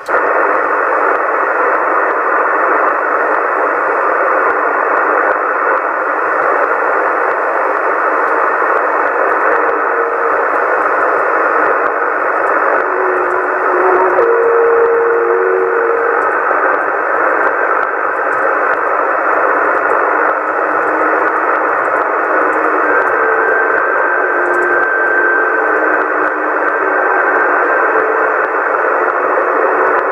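Yaesu FT-450 transceiver receiving on the 27 MHz CB band in USB: a steady hiss of band static from its speaker, an empty channel with nobody answering the call. A few faint steady whistling tones come and go in the hiss, the clearest about halfway through.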